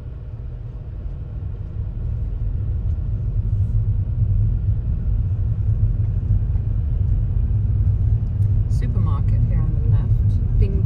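Low rumble of a car's tyres on a cobblestone street heard from inside the cabin, growing steadily louder over the first few seconds.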